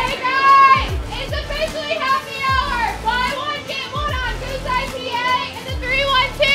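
A woman's very high-pitched, excited voice in short bursts with sliding pitch, over dance music with a deep bass hit about once a second.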